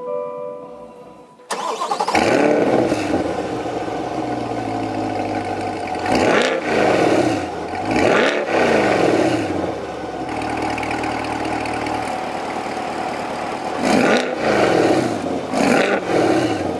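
2020 Chevrolet Corvette C8 Stingray's 6.2-litre LT2 V8 firing up about a second and a half in. It then idles steadily and is revved four times, each rev rising and falling quickly, heard from behind at the quad exhaust tips.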